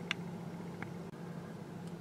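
Quiet, steady hum inside the cabin of a 2017 Kia Niro Hybrid standing still, with two faint ticks in the first half.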